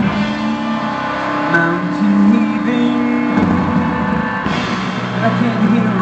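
A live band plays an instrumental passage on electric guitar, keyboard and drums, holding sustained chords. The harmony shifts about halfway through, and a low bass note comes in near the end.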